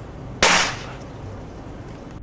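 A single airgun shot about half a second in: a sharp crack that fades within a fraction of a second, over steady low background noise.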